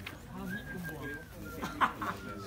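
Voices talking in the background, with a faint, long, high-pitched call that slowly falls in pitch and a brief loud sharp sound near the end.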